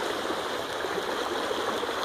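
Fast floodwater rushing steadily down a concrete drainage ditch and churning around the legs of someone wading through it.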